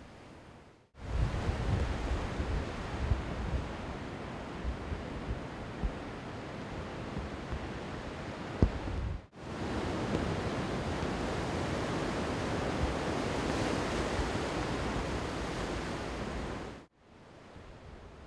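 Heavy typhoon surf breaking on a rocky shore, a steady roar of water with strong wind gusting on the microphone, in two stretches with a brief break about nine seconds in.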